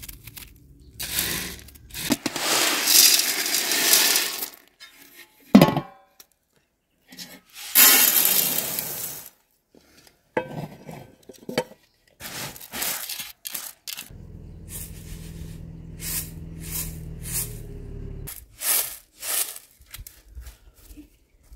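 Dry lentils rattling onto a metal tray in two long pouring bursts. After them come scattered clicks and scrapes as the lentils are spread and picked over by hand on the tray.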